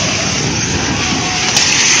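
A multi-storey building collapsing in an earthquake: a loud, steady rush and rumble of falling debris and billowing dust, with one sharp knock about a second and a half in.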